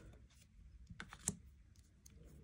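A few faint clicks and taps of tarot cards being handled on a tabletop, the sharpest two about a second in.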